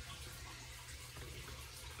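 Faint, steady hiss with a low hum underneath: room tone with no distinct event.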